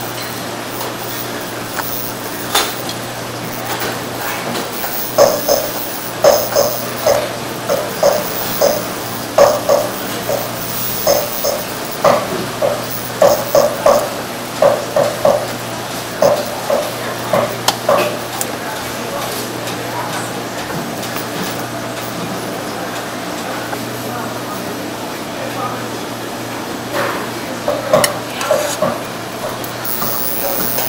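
Speech in short bursts over a steady low hum, with a long lull in the middle. Any sound of the knife slicing the raw salmon is too faint to stand out.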